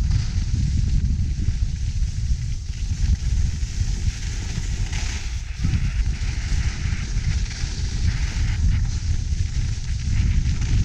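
Wind buffeting the camera's microphone in an uneven rumble during a ski descent, over a steady hiss of skis sliding on packed, groomed snow.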